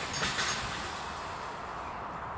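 A sharp knock and a short rustle at the start, then a steady rushing noise with no distinct source.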